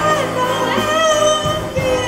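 Live high school jazz big band playing, with a female vocalist singing held notes over the horns, bass and drums.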